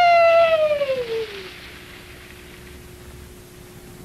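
A person's long, high, wordless yell that slides slowly down in pitch and stops about one and a half seconds in. After it there is only a faint steady hum and hiss from the old film soundtrack.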